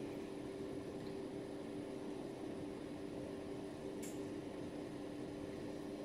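Steady low hum of a running kitchen appliance, two even tones over a faint hiss, with one soft tick about four seconds in.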